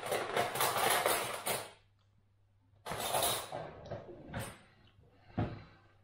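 A kitchen cutlery drawer being rummaged: cutlery rattling and clattering for about a second and a half as a spoon is picked out, then a second shorter burst of drawer and cutlery noise about three seconds in, followed by a few lighter knocks.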